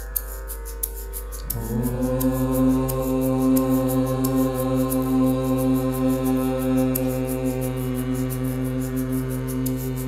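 A group of singers chanting, entering about a second and a half in and holding one long, steady note, over a faint sustained drone.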